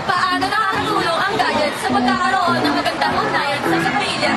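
Girls talking over background music.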